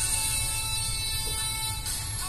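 Music playing for a child's dance routine, with a long held note over a steady low bass.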